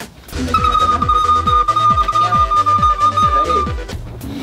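One long, steady high note on a recorder over an electronic dance beat, its kick drum hitting about two to three times a second with a low bass line under it. The note stops just before the end.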